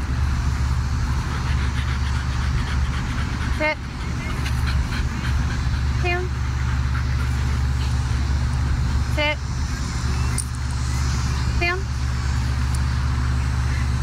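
A woman's short, one-word commands to a dog, given every two to three seconds, over a steady low rumble.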